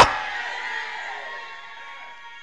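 A loud shout through a church PA cuts off and dies away in the hall's reverberation over about a second and a half, leaving soft sustained keyboard chords.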